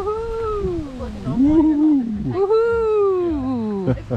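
A cat meowing three times in long, drawn-out meows that rise and then fall in pitch.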